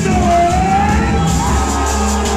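Live hip-hop music played loud through a concert PA, with heavy bass and one long, slowly wavering high tone held over it.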